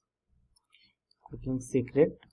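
Near silence for about a second, then a man starts speaking.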